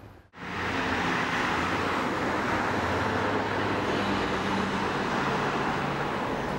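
Steady city traffic noise: a continuous wash of road traffic with a low engine hum, starting just after a brief moment of silence at the very start.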